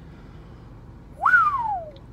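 A single whistled note starting about a second in, rising quickly and then sliding slowly down in pitch.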